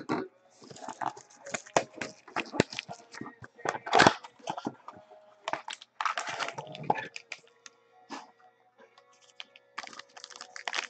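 Small cardboard trading-card hobby box being torn open by hand: a run of sharp crackles and ripping cardboard, with the loudest tear about four seconds in, then the plastic wrapping of the cards inside crinkling near the end.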